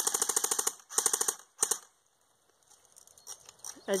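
Airsoft AK-47 electric gun (AEG) firing on full auto: a rapid rattle of shots in three bursts, the first lasting under a second and the last two shorter, then it stops.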